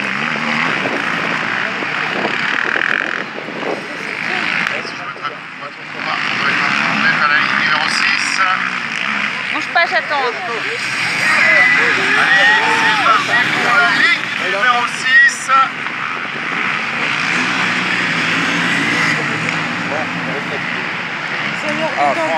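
A field of racing quad engines running together on a start grid, a dense continuous engine noise. A man's voice carries over it in the middle.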